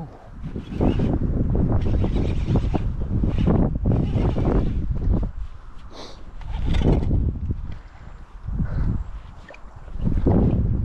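Uneven rumbling wind and handling noise on a body-worn camera microphone as an angler fights a hooked Murray cod on a baitcasting reel, easing off briefly about five and eight seconds in.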